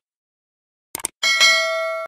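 Subscribe-button sound effect: two quick clicks about a second in, then a bright notification-bell chime that rings on and fades slowly.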